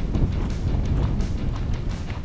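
Wind buffeting an action camera's microphone, a steady low rumble.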